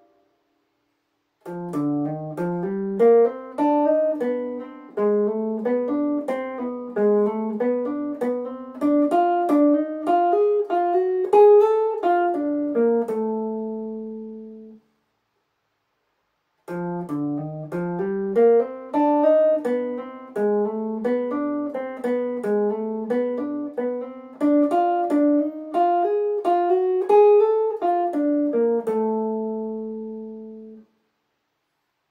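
Clean electric guitar picked in a fast run of single sixteenth notes, a jazz line with enclosures through a II–V–I, ending on a held note that rings out. After about two seconds of silence the same phrase is played a second time.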